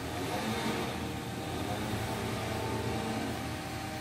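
Steady low hum of a car engine running.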